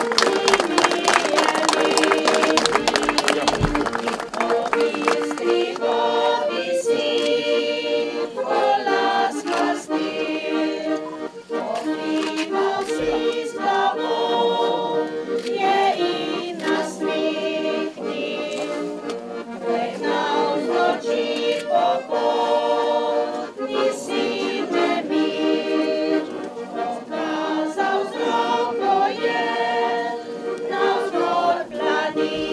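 Choir singing in slow, held chords.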